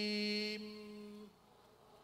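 A man's voice holding one long, steady sung note through a microphone and loudspeaker, as at the end of a chanted phrase; it breaks off about half a second in, a fainter trace lingers until just past a second, and then only low room noise remains.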